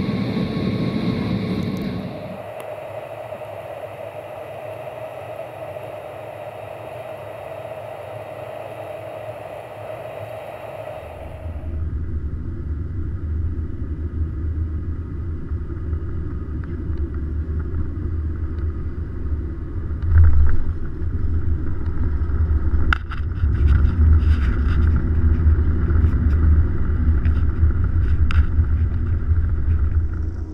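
Airbus A320 landing heard from inside the cabin. Steady engine and airflow noise gives way, about a third of the way in, to a heavy low rumble of the jet on the runway. Sharp thumps and rattles come about two-thirds in, and the rumble is louder as it rolls out with the spoilers raised.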